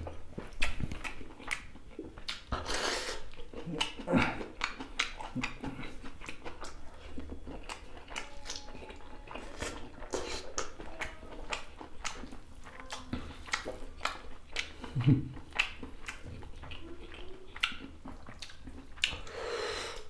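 Close-miked chewing of rice and boiled beef with mustard leaf, eaten by hand: wet lip smacks and mouth clicks at irregular intervals, with a short low hum about fifteen seconds in.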